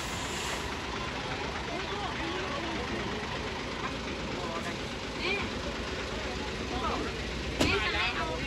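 Diesel engine of a Hino concrete mixer truck running steadily while the truck is stuck in mud, with faint voices over it.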